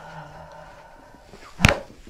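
A single sharp, loud crack about one and a half seconds in as the chiropractor thrusts down on the mid back: a thoracic spine adjustment, the joints popping as they release.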